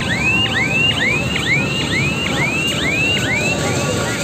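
An electronic siren-like tone of rising chirps repeating about twice a second, each sweeping up in pitch and then cutting off sharply. It fades a little near the end, over a steady fairground din.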